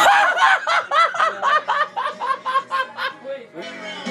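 A young man laughing hard: a long run of quick, pitched "ha" bursts, about four or five a second, that trails off after about three seconds.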